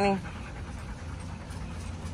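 A dog panting steadily.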